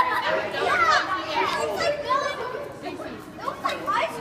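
A crowd of children chattering at once, many voices overlapping in a large hall.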